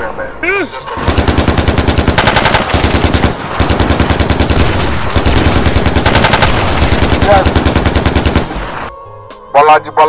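Rapid automatic rifle fire, about nine shots a second, in long bursts with a short break about three and a half seconds in. It stops near the end. A brief whistling whine comes just before the firing starts.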